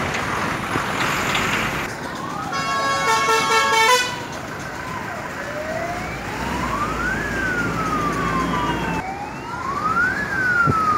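Traffic noise from a moving car convoy, then a loud blast of a vehicle horn lasting about a second and a half. Over this a siren wails, rising and falling slowly, one cycle about every three seconds.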